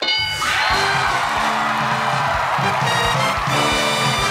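A bright chime as a game-show answer is revealed, then upbeat show music with a steady beat over a studio audience cheering and whooping.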